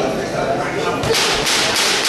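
A quick run of about four sharp hissing bursts in the second half, in time with a close exchange of punches between two amateur boxers: short forced breaths as the punches are thrown. A background of voices in a large hall runs throughout.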